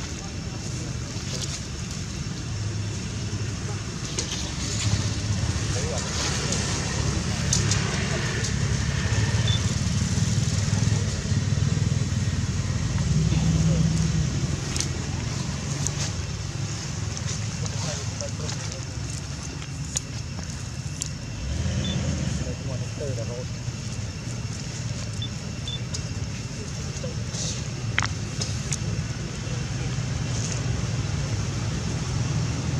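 A steady low rumble with faint, indistinct voices in the background, and an occasional click.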